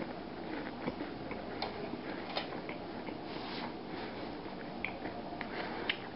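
Steady low room noise with scattered faint, irregular clicks and ticks.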